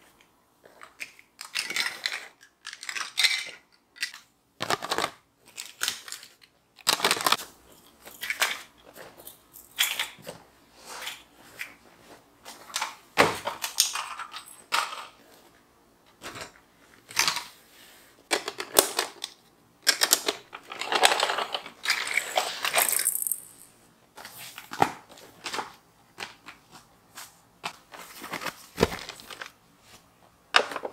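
Plastic baby toys clattering and knocking as they are picked up and put away into a fabric storage basket and onto the floor, in irregular handling noises with short pauses between.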